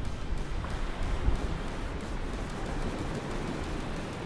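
Wind buffeting the microphone over the steady wash of surf on the beach.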